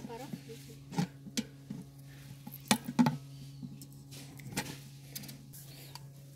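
Scattered sharp metal clicks and knocks as the pump head and lid of a manual bucket grease pump are fitted onto its grease canister, about six in all, over a low steady hum.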